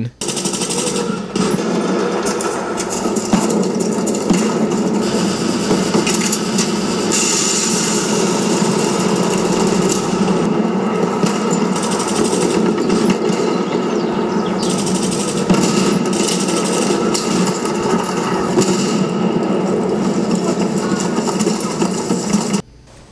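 Loud, continuous rapid gunfire, machine-gun fire going on without a break.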